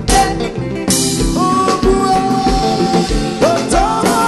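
Haitian konpa band playing live: a steady drum and bass groove under held melody notes that glide into pitch.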